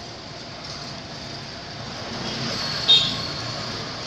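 Steady background hum of road traffic, swelling a little past the middle, with one short, sharp high-pitched sound about three seconds in.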